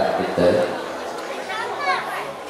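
Several people's voices speaking in a large hall, with one higher voice rising and falling near the end.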